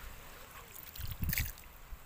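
Water draining into an eel burrow in wet mud, faint, with a brief louder patch about a second in. The water keeps going in, a sign that the hole runs through to an outlet and is a real eel burrow.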